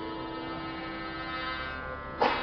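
Harmonium holding a steady chord of several notes at once, with no singing over it.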